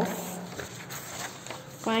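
Pages of a printed exam paper being turned and handled, a rustling of paper.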